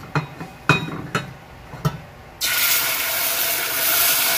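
A few sharp clinks, then about two and a half seconds in a sudden loud, steady sizzle as blended red chile sauce is poured into hot oil in a stainless steel pot, frying the sauce.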